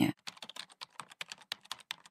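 A rapid, irregular run of light clicks, about ten a second, starting just after the voice stops.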